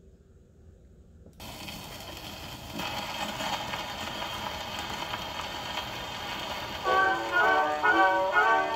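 An acoustic wind-up gramophone playing a shellac 78 rpm disc: surface hiss and crackle start suddenly about a second and a half in, and about seven seconds in the orchestral introduction of the record begins, with brass prominent.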